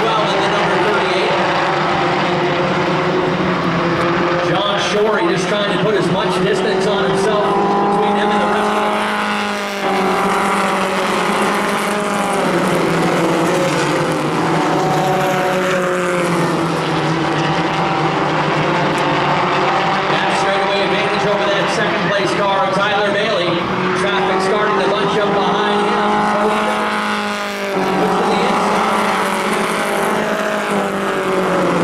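A pack of four-cylinder pro-stock race cars racing around a short oval, many engines running at high revs together. Their pitch climbs as the field accelerates and drops off suddenly about ten seconds in and again near the end.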